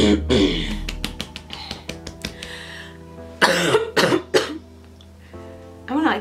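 A woman coughing: one cough right at the start, then a run of three coughs about three and a half seconds in, over soft background music with sustained tones.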